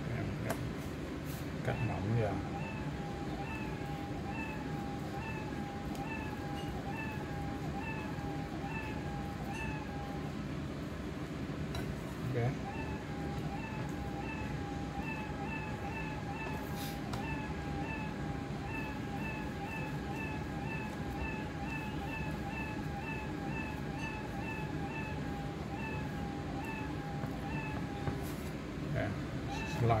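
A long run of short, high mewing cries, about two a second, each a little arched tone. They break off for a couple of seconds about ten seconds in, then go on until near the end. A few faint low knocks come at about two and twelve seconds.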